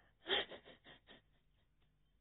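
A woman sobbing: one sharp gasping intake of breath about a third of a second in, then a few shorter catching breaths that fade within the next second.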